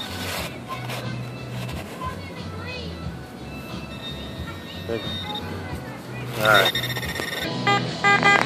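Garrett pinpointer probing a hole in beach sand for a buried target, sounding a high steady alert tone that comes and goes.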